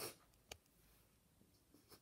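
Near silence in a small room: a soft breath at the start, then a single short click about half a second in.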